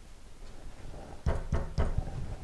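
A few sharp knocks in quick succession in the second half, from a paintbrush being wedged behind a painting board on a wooden easel to stop the board wobbling.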